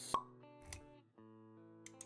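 Intro music of held pitched notes under an animated logo sequence, with a sharp pop just after the start, the loudest sound, and a soft low thud a little later.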